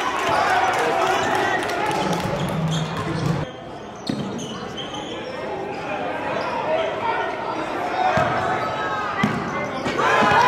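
Live sound of a basketball game in a gymnasium: the ball dribbling on the hardwood floor, squeaks and indistinct voices from the players and crowd. A low steady tone holds for about a second and a half, and the sound drops suddenly about three and a half seconds in at an edit.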